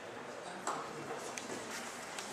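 Paper pages of a stapled handout being leafed through: a few short rustles and ticks of paper, one sharper about half a second in, over quiet room noise.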